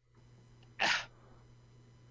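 A single short, breathy vocal burst from a person, heard as "uh", about a second in, over a faint steady low hum.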